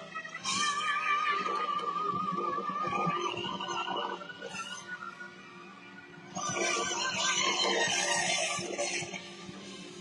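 Live band music with violin, guitars and drums, heard over the PA from within the crowd. A high held line with a strong vibrato rides over the band early on. The music drops quieter in the middle and comes back loud about six seconds in.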